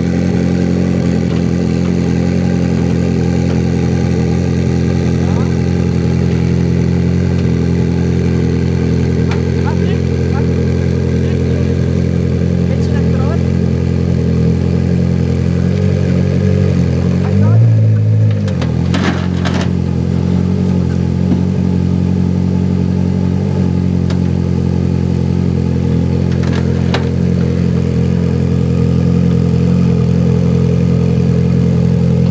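Ferrari 458 Challenge's 4.5-litre V8 idling steadily, with a brief louder surge a little past halfway. A few sharp clicks follow.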